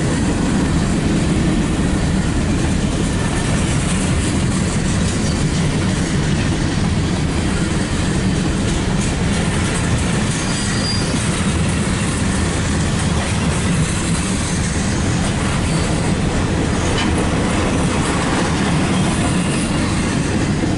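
Norfolk Southern mixed freight train's cars rolling past: a steady, unbroken noise of freight-car wheels on the rails.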